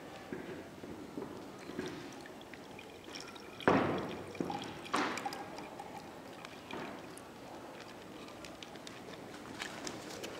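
Strawberry mash and detergent solution poured from a plastic ziplock bag into a glass measuring jug, with the bag rustling in the hands. There are two sharp crackles a little more than a second apart, about four seconds in.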